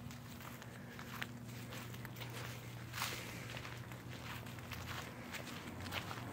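Footsteps crunching softly on dry grass and fallen leaves, a scattering of faint irregular steps.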